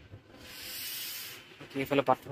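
Handling noise from the phone being moved: a brief rubbing hiss that swells and fades over about a second. A man's voice starts near the end.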